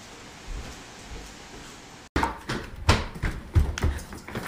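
A steady room hiss, then, from about two seconds in, a quick run of knocks and clunks as a glass tumbler and a dishwasher are handled at a kitchen counter.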